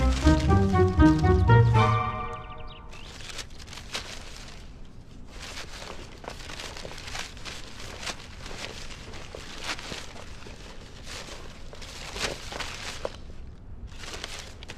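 Drama background music plays for about the first two seconds and then breaks off. After it, a quieter run of soft crackling and scraping as sheets of paper are picked up and shuffled together off a stone floor.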